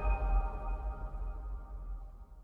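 Electronic logo sting fading out: a high ringing tone and several softer sustained tones over a deep low rumble, dying away steadily.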